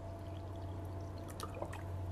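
Water poured from a plastic bottle into a glass bowl of papaya seeds, a soft, faint pour, with a few small ticks about one and a half seconds in.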